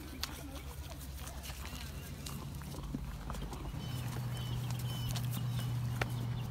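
Horse chewing a treat taken from the hand, with faint crunches, over a steady low hum that gets louder about two-thirds of the way through.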